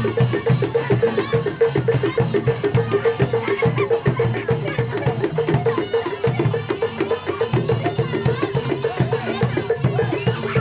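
Live gamelan-style percussion for a Barongan Blora dance: drums and tuned gongs keeping a fast, even beat.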